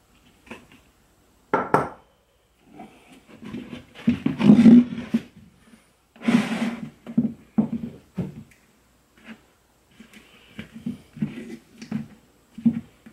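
Handling noise from stitching a rawhide banjo head onto a gourd: irregular rubbing, scraping and pulling of the hide, floss and gourd against a wooden workbench, with a few short knocks. The loudest stretch is around the middle.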